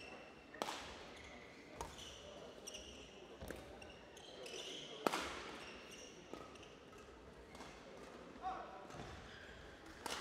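Badminton rally: rackets striking the shuttlecock about once a second or so, the loudest hit about five seconds in, with short shoe squeaks on the court floor between the hits.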